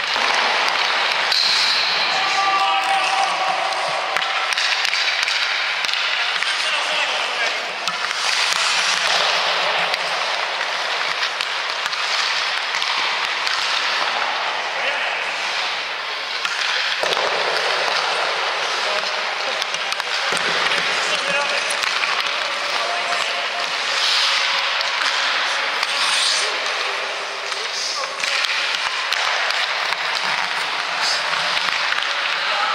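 Ice hockey practice sounds: a steady scraping hiss of skate blades on the ice, broken by many sharp knocks of pucks against sticks, goalie pads and the boards, with voices calling in the background.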